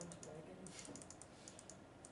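Faint, irregular tapping of typing on a computer keyboard, several keystrokes a second.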